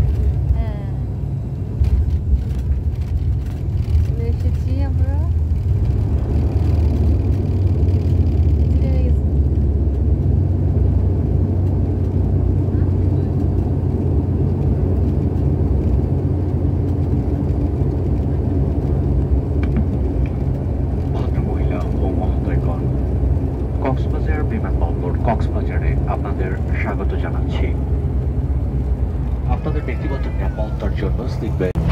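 Cabin noise of an ATR 72-600 twin turboprop during its landing roll: a steady low rumble from the propeller engines and the wheels on the runway.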